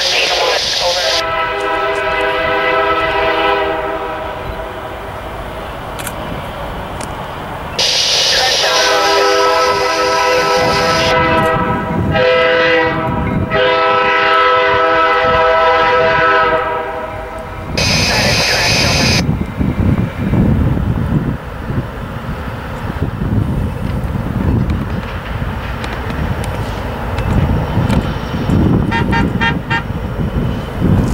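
Diesel freight locomotive air horn sounding the grade-crossing signal, long, long, short, long, from the lead CN SD75I as the train approaches the crossing. The low rumble of the diesel engines then grows as the locomotives draw near.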